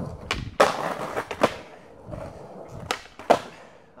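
Skateboard trick on a concrete curb: a tail pop shortly in, then the loudest hit as the trucks land on the curb and grind briefly along it, a half-cab fifty-fifty he judges landed well enough. After that come a few sharp clacks of the board and the wheels rolling on smooth concrete.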